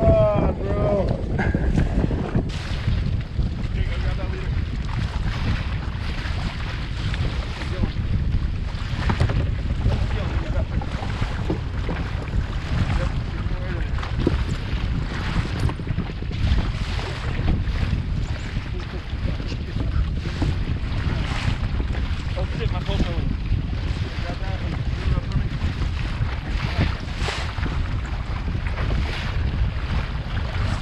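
Wind buffeting the microphone with choppy water slapping against the hull of a Sea-Doo Fish Pro jet ski, the slaps coming irregularly every second or so over a steady low rumble.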